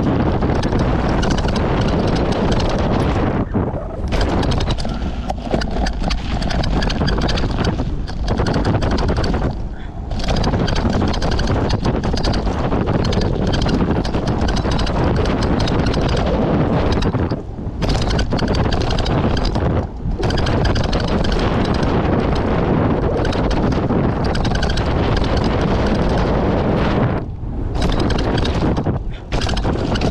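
Mountain bike ridden fast down a dusty dirt trail, heard from a bike-mounted action camera: steady wind rush on the microphone mixed with the tyres rolling on dirt and the bike rattling. Several brief lulls break the noise.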